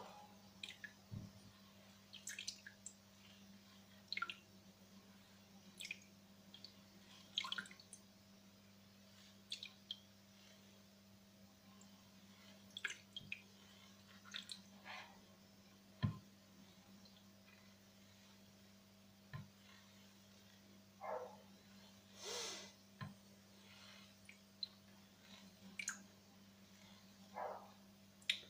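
Faint, scattered drips and small splashes of water as wet paydirt is worked by hand in a plastic gold pan, with a steady low hum underneath.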